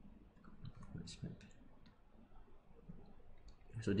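A few faint, scattered clicks from a computer's pointing input as a pen tool is selected in a whiteboard app.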